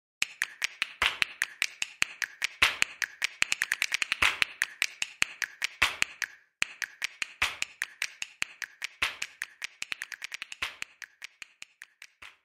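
A Beyblade spinning top clattering in a plastic stadium: a fast, uneven run of light clicks with a louder strike about every second and a half. It stops for a moment a little past the middle.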